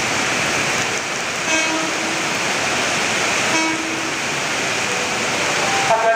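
Horn of an approaching JR 205 series electric commuter train sounding two short toots, about two seconds apart, over the steady hiss of heavy rain.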